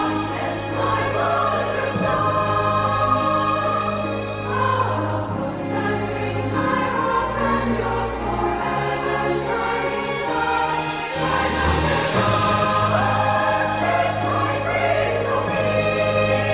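Background choral music: a choir singing sustained chords over a low bass.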